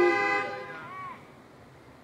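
Several car horns honking together at different pitches, held steady and then stopping about half a second in. Drive-in churchgoers in their parked cars are sounding their horns in place of applause or an amen.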